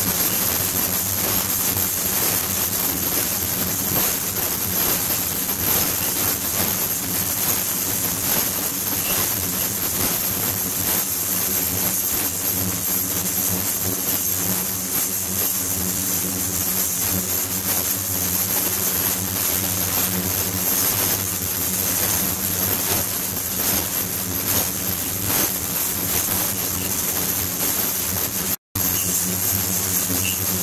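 Ultrasonic tank running, its water cavitating and churning: a steady, dense hiss with a thin high whine above it and a low buzzing hum beneath. The sound cuts out for an instant just before the end.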